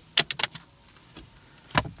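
Sharp clicks and knocks from a 2006 Toyota Tacoma's sun visor being handled and fitted at its headliner mount. There are three quick clicks at the start, a faint one about midway and another sharp one near the end.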